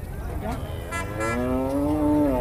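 A zebu calf moos once: one long, loud low call starting about a second in, holding its pitch and then falling as it trails off.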